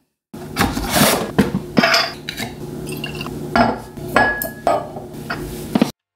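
A whisky bottle uncorked and poured into a tasting glass: a series of clicks, knocks and rubs of cork, glass and bottle on a stone countertop, with a brief glassy ring about four seconds in.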